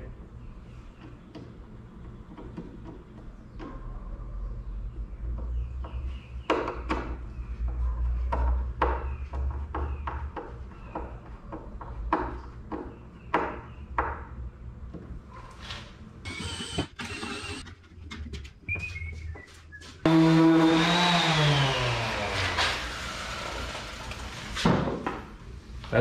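Hand work fitting a wooden cabinet door on its hinges: scattered knocks and clicks over a low steady hum. About twenty seconds in, a loud pitched sound starts suddenly and slides down in pitch before fading.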